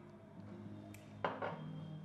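Quiet kitchen handling sounds of a hand working crumble mixture in a glass bowl and a glass bottle being handled: a small click about halfway, then a brief rustle, over faint background music with a steady low tone.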